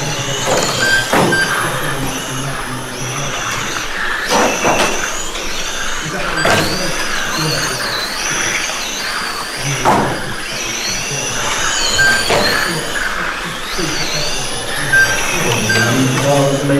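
Several 1/12-scale electric RC pan cars racing, their motors whining high and gliding up and down as they accelerate and brake, with a few short sharp noises along the way.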